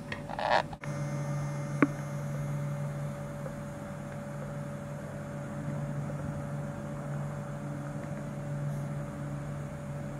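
A steady low mechanical hum that swells about a second in, after a brief scratchy sound and a momentary drop. A sharp click comes about two seconds in.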